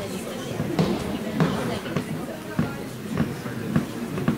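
Low murmur of voices in a large sports hall, with irregular sharp knocks about once or twice a second.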